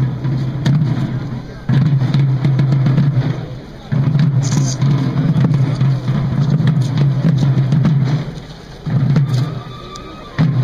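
Procession drums playing a run of long rolls, each starting suddenly and fading away over a second or two, with crowd voices underneath.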